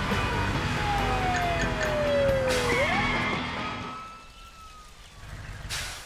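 Cartoon fire truck sound effect: a low engine rumble with a siren whose tone slides down in pitch, fading away about four seconds in.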